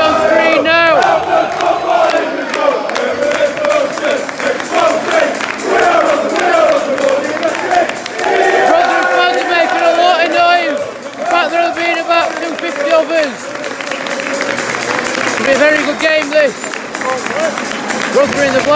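A large football crowd in a stadium singing and chanting loudly and continuously as the teams come out, with cheering mixed in.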